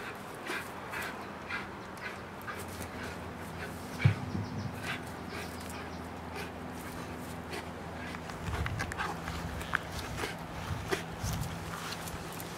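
An American pit bull terrier leaping at and tugging on a spring-pole rope toy: a quick run of short breaths and scuffs, with a loud thump about four seconds in. A low steady drone runs underneath from about four seconds on.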